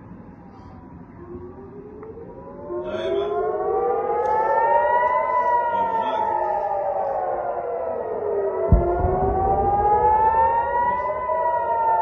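Several civil-defence warning sirens sounding together across the city, wailing slowly up and down in pitch: a rocket alert. A single sharp thump comes near the end, about nine seconds in.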